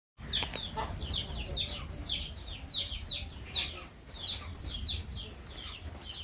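A bird peeping over and over: short, high calls that fall in pitch, two or three a second, over a low steady rumble.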